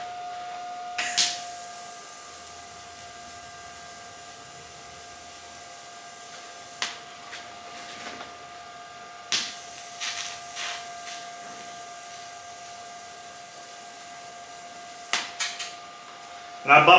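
TIG welding arc on steel frame tubing, tacking a butt joint: two steady high hisses of about five to six seconds each, the first starting about a second in and the second a few seconds after the first stops, with clicks as each arc starts and stops.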